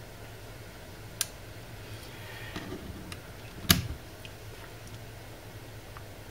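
Steady low hum of a heat pump air handler's blower running with the fan switched on. A faint click comes about a second in and a sharper click a little after three and a half seconds.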